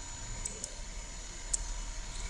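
A few faint clicks of a computer mouse over a low, steady electrical hum.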